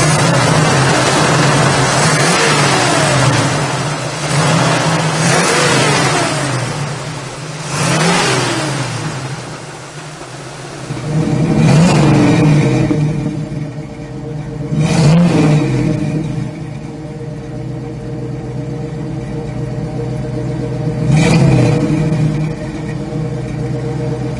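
Big-block V8 of a 1970 Chevrolet Nova running and being revved repeatedly through the first half, pitch rising and falling with each rev. It then settles to a steady idle with three short throttle blips, heard from behind at the tailpipe.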